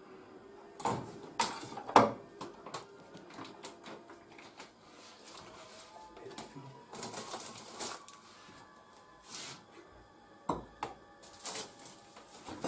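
Kitchen handling sounds: scattered clicks and knocks of dishes and utensils on a countertop, with a few short rustling bursts, the last near the end as cling film is pulled from its roll.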